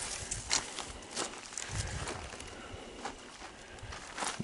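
A few soft, irregular crunches of footsteps on dry, tilled soil and crop stubble.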